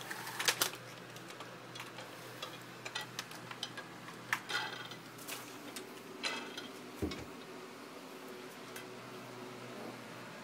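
Light irregular clicks and clacks of small hard toy pieces, a toddler sliding beads along a wire bead-maze toy, with a heavier thump about seven seconds in, over a faint steady hum.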